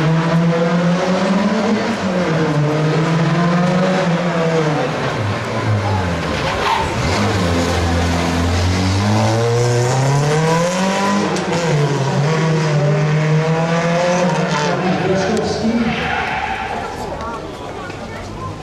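Rally car engine revving hard on a street stage, its pitch rising and holding, dropping low for a couple of seconds around the middle as the car slows, then climbing and holding again before fading away near the end.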